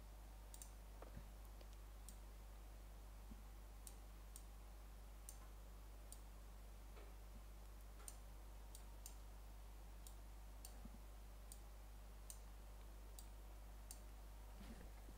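Faint computer mouse clicks at irregular intervals, about a dozen and a half, over a steady low hum.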